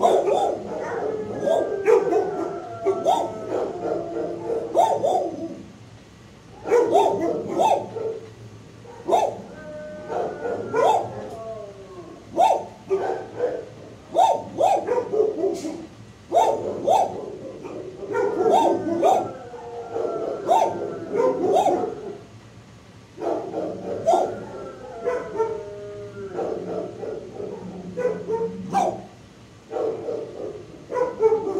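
Dogs barking in a shelter kennel, in repeated bouts of rapid barks with brief lulls between them, mixed with some whining calls.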